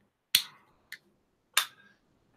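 Three short, sharp clicks over about a second and a half, the middle one faintest.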